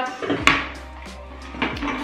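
Crystal glassware knocking against a glass tabletop as it is pushed aside: one sharp clink about half a second in, then a couple of lighter taps near the end, over soft background music.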